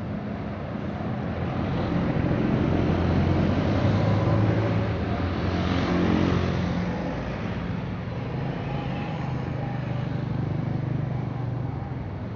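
Road traffic passing on a busy street: a large bus and then a box truck drive by, their engines loudest in the middle, with a falling pitch as they go past, over a steady flow of other vehicles.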